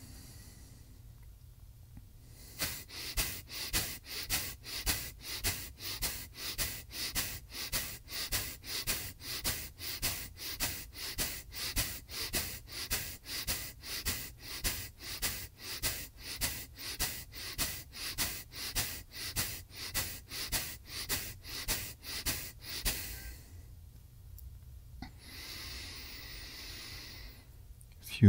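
A man doing kapalbhati breathing: a quick, even run of forceful exhales through the nose with the mouth closed, about two a second. It starts a couple of seconds in and stops a few seconds before the end. Softer, slower breathing follows near the end.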